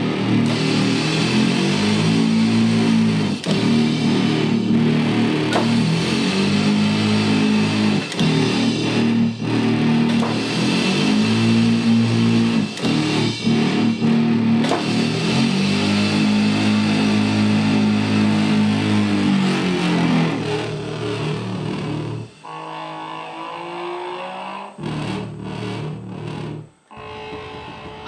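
Loud, heavily distorted doom/industrial electronic music: deep droning tones held in long phrases of a few seconds each, played on custom-built steel hand-operated controllers with sliding handles. About 22 seconds in it drops to a quieter, thinner passage.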